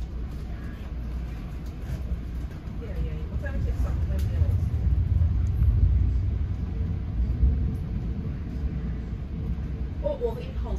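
Low rumble of a passenger train coach's wheels and running gear heard from inside the car as the train runs past a station, growing louder over the first half and then steady.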